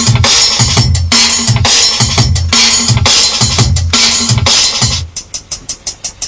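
A finished drum and bass break playing: fast, chopped breakbeat drums over a deep bass line that repeats in a short pattern. About five seconds in, the bass and full beat drop out, leaving only sparse, light drum ticks.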